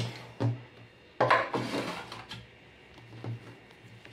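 Kitchen handling sounds: a couple of soft knocks, then a louder scrape about a second in, as raw bread dough is lifted and an aluminium baking pan is shifted on a stone countertop, followed by a few light taps.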